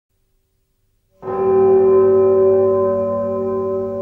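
Silence for about a second, then a single bell-like stroke sets in suddenly and rings on with several steady tones, slowly fading, opening a piece of ambient music.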